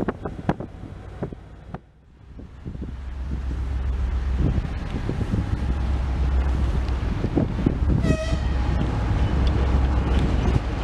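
Wheels of a passing M62-family diesel locomotive clattering over the rail joints, cut off about two seconds in. Then the low drone of another M62-family diesel's two-stroke V12 engine approaching and growing louder, with one short horn toot about eight seconds in.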